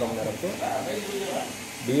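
Speech only: a man talking, over a steady background hiss.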